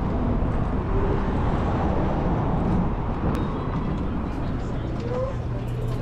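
Busy street ambience: the rumble of passing traffic with indistinct voices of people nearby. Near the end a steady low hum comes in.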